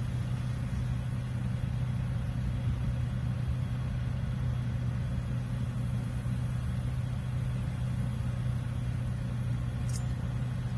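A motor running steadily nearby, a low unchanging hum.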